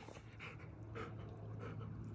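Great Pyrenees dog panting with its mouth open, soft quick breaths about twice a second, over a steady low hum.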